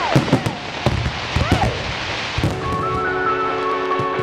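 Fireworks going off: a run of sharp bangs and crackles, some with short pitch glides. About two and a half seconds in, music with sustained held notes begins.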